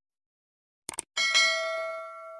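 Two quick mouse-click sound effects, then a bright bell chime that rings on and slowly fades: a notification-bell sound effect.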